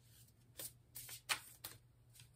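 A deck of divination cards being shuffled: about four short, soft papery swishes.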